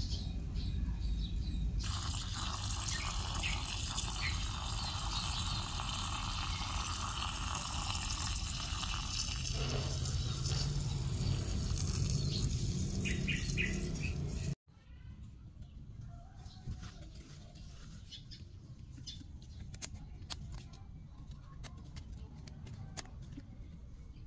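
A garden hose nozzle sprays a jet of water onto soil and roots in a plastic plant pot. It makes a steady hiss that starts about two seconds in and cuts off abruptly about halfway through. Afterwards only a faint background remains, with scattered small clicks.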